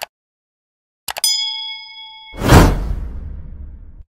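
Subscribe-button animation sound effects: a short click, then a couple of clicks about a second in and a bell-like ding that rings for about a second, then a loud whoosh that swells and fades away.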